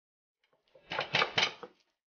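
Stone roller worked back and forth on a flat grinding stone, crushing chopped onion and chili flakes. It makes a short run of about four rough grinding strokes, starting about a second in.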